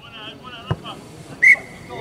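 Referee's whistle: one blast about a second and a half in, loud at the onset and then held as a steady shrill tone. Faint distant voices before it.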